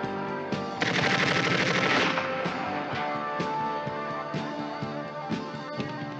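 A burst of automatic rifle fire, a rapid string of shots lasting about a second, starting about a second in. A guitar-driven film score plays under it throughout.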